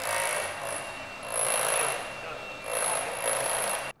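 Hilti Nuron cordless rotary hammer drilling into a concrete slab: a steady grinding hammer with a high whine, surging louder about three times before it stops abruptly near the end.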